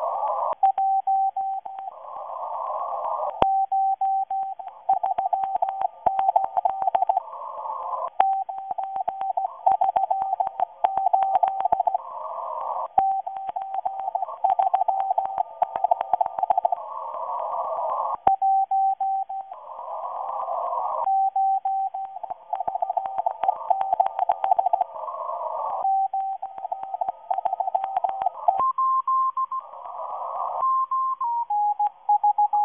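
Morse code signal from a Russian agent transmitter heard on a shortwave radio receiver: a single mid-pitched tone keyed on and off in dots and dashes, through narrow-band hiss with crackling static clicks. Near the end the tone steps up in pitch, then back down.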